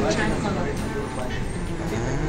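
Diesel engine of a loaded dump truck driving slowly past, a steady low rumble, with indistinct voices over it.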